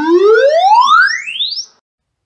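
Electronic sound effect: one tone with overtones sweeping smoothly upward in pitch, from low to very high, and stopping near the end.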